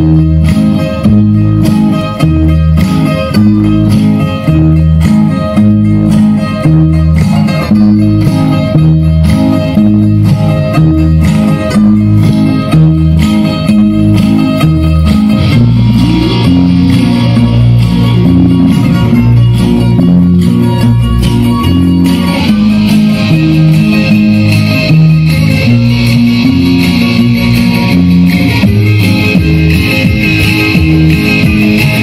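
Loud Greek dance-mix music with plucked strings over a steady beat, played over loudspeakers; the arrangement changes about halfway through.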